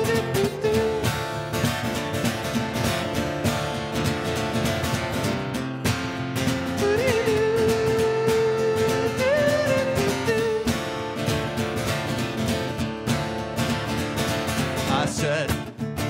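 Acoustic guitar strummed steadily as a song accompaniment, with a man's voice holding long wordless notes, one near the start and a longer one from about seven to ten seconds in.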